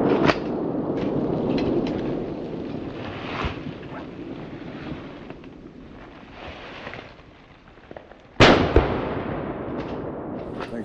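Gunshots echoing through woods: a shot's rolling echo fades out over several seconds, with a sharper crack just after the start. About eight and a half seconds in, a second loud gunshot goes off and echoes away.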